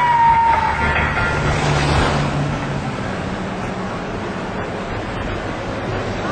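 Music trailing off in the first two seconds, giving way to a steady rushing noise of outdoor street ambience.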